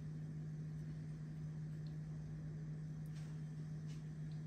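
A steady low-pitched hum over faint background hiss, with one faint click about three seconds in.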